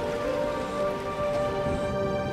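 Background music of long held notes over a steady hiss of rain.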